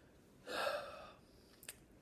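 A man's audible intake of breath about half a second in, lasting about half a second, followed by a small mouth click near the end.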